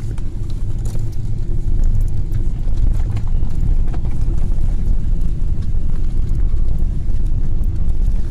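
Cabin noise of an airliner rolling along the ground after landing: a steady low rumble from the engines and wheels, with a few faint clicks.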